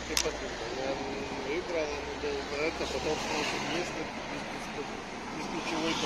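Quiet talk in the background over steady outdoor noise, with one sharp click near the start.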